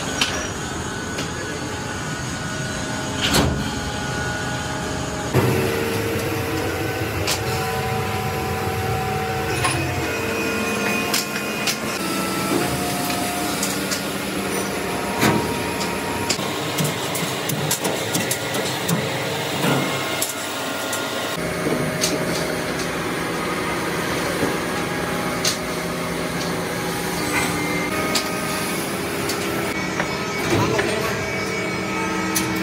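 Workshop noise: a steady machine hum with scattered short metal clicks and clinks as steel brake-shoe assemblies are handled and set on a metal rack. The background changes abruptly several times.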